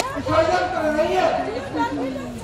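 Speech: a speaker addressing the gathering, with other voices talking at the same time.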